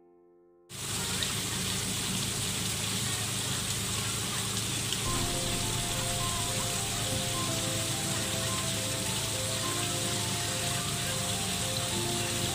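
Steady rush of water from a small waterfall splashing into a pond, starting suddenly about a second in. Soft melodic music notes come in over it about halfway.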